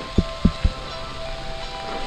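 Mountain bike jolting down a rocky forest singletrack: three low thumps in the first second as the wheels and suspension hit rocks and roots, over a steady high tone.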